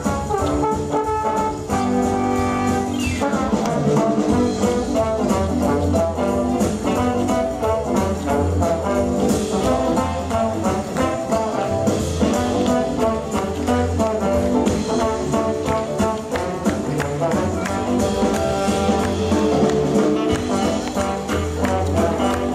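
Dixieland jazz band playing with a steady beat, trumpet and trombone to the fore.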